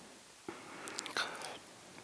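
Faint whispering close to a microphone, from about half a second in to about a second and a half, with a few small clicks.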